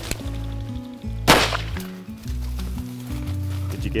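A single shotgun shot about a second and a half in, loud and sharp with a short echo, fired at a flushed wild rooster pheasant. Background music plays throughout.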